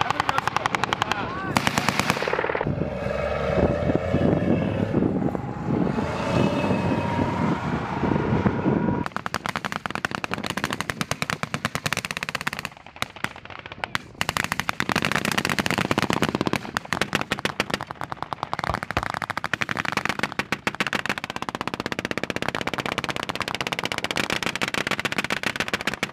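Machine-gun and rifle fire in long, rapid strings of closely spaced shots, running on with only short breaks. Shouted voices come through the gunfire in the first third.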